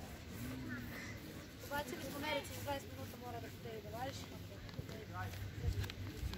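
Young girls' voices calling and shouting out on a football pitch: a run of short, high-pitched calls about two to three seconds in, with scattered calls before and after.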